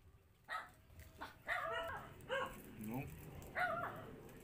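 A dog barking and yipping in a series of short, high-pitched calls.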